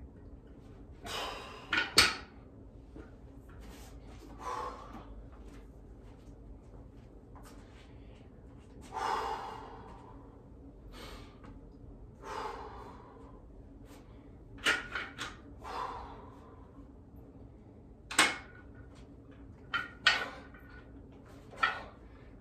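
Hard exhales, one with each repetition of one-arm dumbbell rows, with several sharp metal clanks from the plates of a plate-loaded dumbbell. The loudest clank comes about two seconds in.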